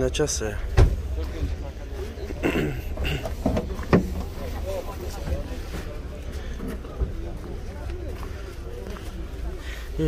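Faint background voices over a low steady rumble, with sharp knocks about one, four and seven seconds in.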